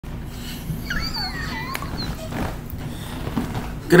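A short, high-pitched, wavering animal whine about a second in, with a sharp click just after it, over a low steady hum.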